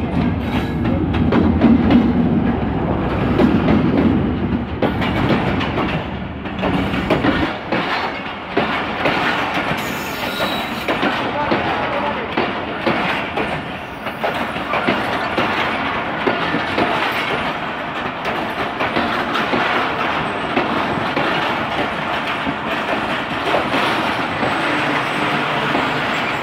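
Passenger train arriving at a platform. For the first seven seconds or so its diesel locomotive passes with a heavy engine rumble. After that the coaches roll by with a steady wheel-on-rail rush and repeated clicks over the rail joints.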